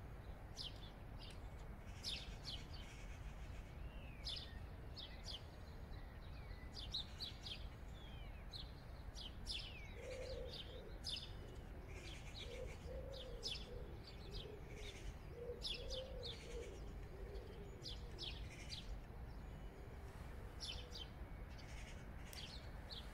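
Small birds chirping again and again in short, high notes, some sliding down in pitch, over a steady low background rumble. A lower, wavering call joins in from about ten seconds in until about eighteen seconds.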